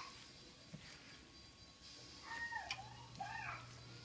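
Quiet room tone with two or three faint, high-pitched, rising-and-falling vocal calls a little past halfway.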